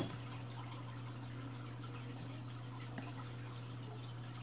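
Turtle-tank aquarium filter running: a steady low hum with faint trickling water, and a small tick about three seconds in.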